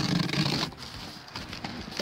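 Knife blade slicing through plastic stretch wrap on a cardboard box, a loud crinkling rasp that stops about two-thirds of a second in, followed by quieter handling of the wrap.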